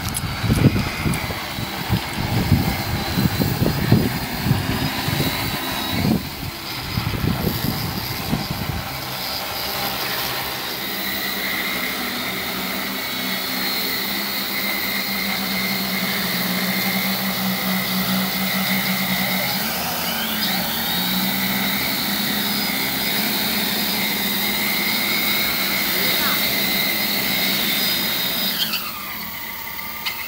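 Propellers and motors of a large 15 kg-payload agricultural spraying multirotor drone flying, a steady buzzing hum with rough, rumbling wind noise over the first several seconds. The pitch wavers briefly midway, and near the end the motors wind down with a falling pitch as the drone lands.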